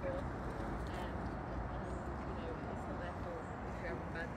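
Faint conversation between people over a steady background noise.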